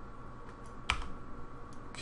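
A single sharp click of computer controls about a second in, with a couple of fainter ticks near the end, over a steady faint hum of room and computer noise.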